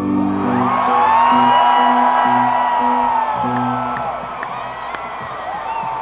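A large arena crowd cheering and whooping as a rock song ends, with the band's last low notes still sounding underneath. The cheering is loudest about a second in and slowly dies down.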